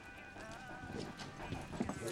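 A dog's claws and a person's footsteps clicking on a hard floor as they step in, a few scattered clicks in the second half, over soft music.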